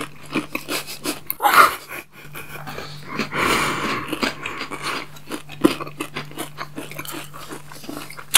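Close-miked chewing of chocolate candy bars: a run of small wet clicks and smacks from mouths working the food, with two longer breathy sounds about one and a half and three and a half seconds in.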